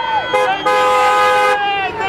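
Car horn honking: a short toot, then a steady blast of about a second, over a shouting crowd.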